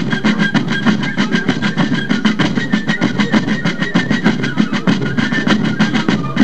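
Fife and drum corps music: rapid, even drum strokes under a high fife melody of short held notes.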